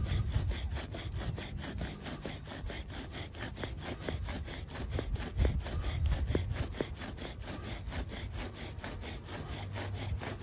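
Bow drill being worked for a friction fire: a sourwood spindle grinding into a sourwood hearth board under a fatwood bearing block, spun by steady back-and-forth bow strokes on a twisted plastic grocery bag bowstring. The result is a rhythmic wooden grinding and rubbing.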